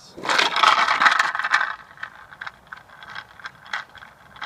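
Riderless longboard's urethane wheels rolling on concrete after a push: a loud rolling rumble-hiss for about a second and a half that then drops away as the board rolls off, leaving scattered light ticks.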